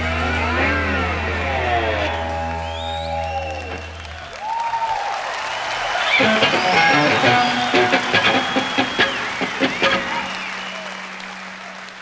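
A live rock trio's electric guitar bends and slides over a held bass note as the song's last chord rings out, stopping about four seconds in. Audience applause, cheering and whistling follow and fade out near the end.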